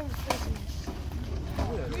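Wind buffeting the microphone in a steady low rumble, with distant voices calling out near the end and a short sharp knock about a third of a second in.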